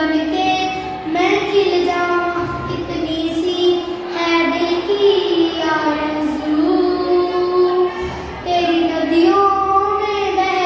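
A boy singing solo, holding long notes that slide from one pitch to the next.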